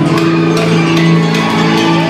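Loud live music with a cowbell struck over and over in time with it, sharp repeated strikes over held notes.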